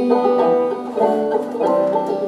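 Banjo picked as song accompaniment, bright plucked notes ringing between the singer's lines.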